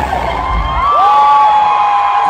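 Arena concert crowd cheering, with long high-pitched screams from fans close by that start about a second in. The music's low beat fades out about half a second in.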